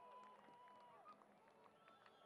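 Near silence, with faint distant voices talking during the first second or so.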